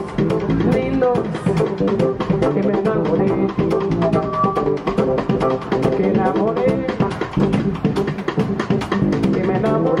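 Live jazz quartet playing an instrumental passage of an Afrobeat-feel groove: piano, double bass and drum kit, with the drums keeping a busy steady beat under moving melodic lines.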